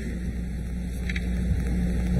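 Pause in speech filled by a steady low hum with faint hiss in the background of the live sound feed.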